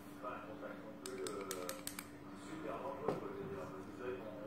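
Buttons on an e-cigarette box mod clicking: a quick run of about six clicks a second or so in, under a man's low talking, with one louder knock near the end.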